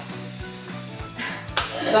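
Background music with steady held low notes and a regular beat. About a second in there is a short hiss, then a sharp click just after.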